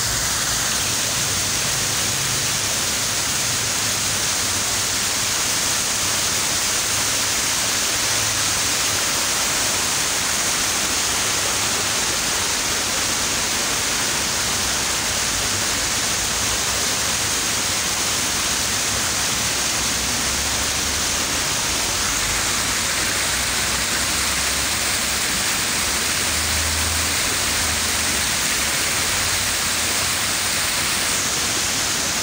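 Water from a man-made waterfall pouring down stepped stone and brick into a pool, a steady splashing rush that never lets up.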